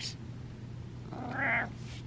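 A domestic cat gives a single short meow, about half a second long, a little over a second in.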